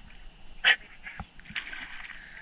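German shorthaired pointer giving one short vocal sound about two-thirds of a second in, over faint splashing of water as a bait net is worked through the shallows.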